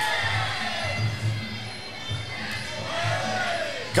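Music with a steady low drum beat, under crowd noise in a large hall.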